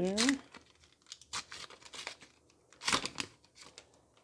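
A McDonald's Pokémon Match Battle booster pack's wrapper is torn open by hand, crinkling in a string of short rips. The loudest tear comes about three seconds in.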